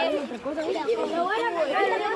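Several people talking over one another at once: group chatter.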